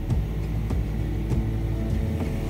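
Yamaha four-stroke outboard motor running under way with a steady low rumble, its propeller churning the wake.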